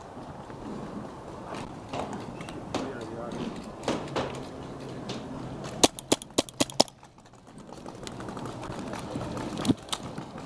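Milsig paintball marker firing a rapid string of about seven sharp shots in roughly one second, about six seconds in.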